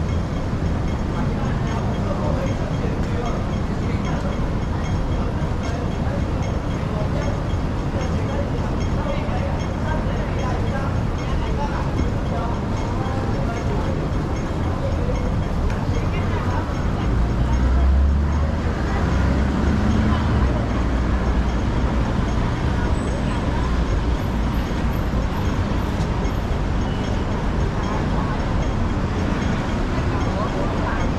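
City street traffic noise, steady throughout, with passers-by talking, and a heavier vehicle's low rumble swelling and fading a little past the middle.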